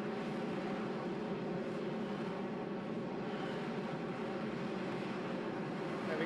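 Harrier's Rolls-Royce Pegasus engine heard from inside the cockpit as the jet hovers and turns in place: a steady, even hum of many tones over a bed of noise.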